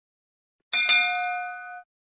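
A bright bell ding sound effect for a notification-bell icon: one strike about three quarters of a second in, ringing with several clear tones for about a second, then cutting off suddenly.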